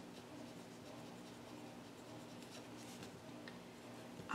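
Faint scratching of a pen writing on paper, in many short strokes.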